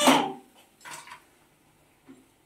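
A metal spatula scraping briefly against a steel kadhai about a second in, as fried pakoras are lifted out of the oil.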